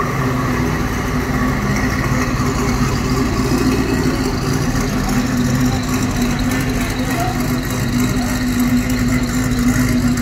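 Newly rebuilt 1934 Bugatti Type 57 straight-eight engine running steadily at low revs as the car moves off slowly under light load.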